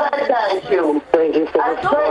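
Speech: one loud voice talking or praying without pause, with a short break about a second in.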